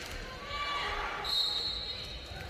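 Referee's whistle giving one steady, high blast of under a second near the end to start play at a floorball faceoff. Faint voices echo in the sports hall before it.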